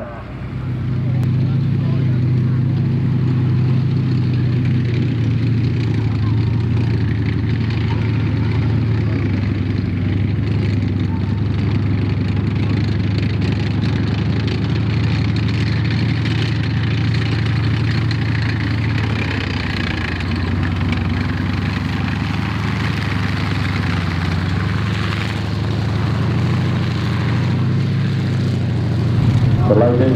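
M4 Sherman tank driving across a field, its engine running with a steady drone that comes up about a second in.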